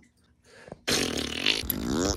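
A person's wordless vocal sound, a buzzy, pitch-bending mouth noise, starting suddenly about a second in after near silence.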